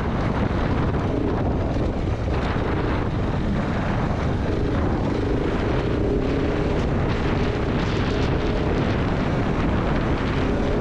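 KTM 690 Enduro R's single-cylinder four-stroke engine running steadily as the bike is ridden, its engine tone standing out more clearly after about four seconds, over a constant rumble of riding noise on the camera microphone.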